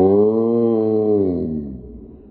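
A man's long, drawn-out yell of pain, one low held cry that sags in pitch and fades near the end.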